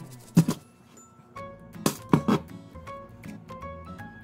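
Ice cubes dropped by hand into a glass blender jar: five hard knocks, two close together near the start and three more around the middle, over background music.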